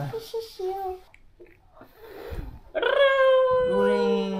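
A young child's long high-pitched squeal, held for nearly two seconds and falling slightly in pitch. A lower voice joins near the end.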